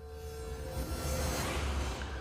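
Intro of a heavy metal song: a low rumbling drone and a wash of noise that swell up over the first second and then hold steady, with one steady held tone over it.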